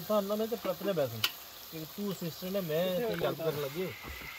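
Kebab patties sizzling on a hot slate slab over a wood fire, under people talking, with one sharp click about a second in.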